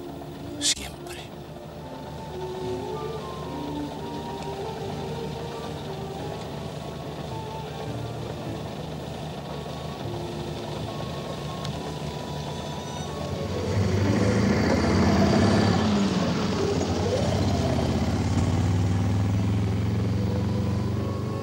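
Soft film score with held notes, broken by one sharp click about a second in. From about two-thirds through it grows louder, with a car engine running and pulling away under the music.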